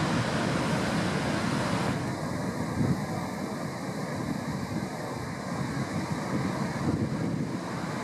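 Heavy surf breaking and rushing against a rocky shore in a steady wash of noise, with wind buffeting the microphone.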